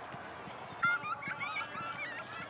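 A bird calling: a burst of several quick, high chirping notes that jump in pitch, starting about a second in.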